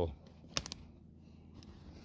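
A quick cluster of three light clicks about half a second in, and one fainter click later, from the snared coyote being dragged through twigs and snare wire. Otherwise quiet.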